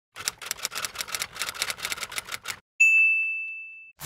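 Typewriter sound effect: a quick run of key strikes for about two and a half seconds, then a single bell ding that rings out and fades.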